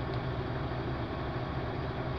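Mercedes-Benz Actros truck's diesel engine idling with a steady low hum, heard from inside the cab.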